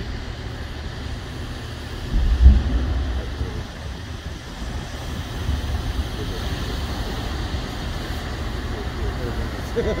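Steady low rumble of large fuel-fed flames burning on an aircraft fire-training mock-up, with a louder low burst about two seconds in. A person laughs near the end.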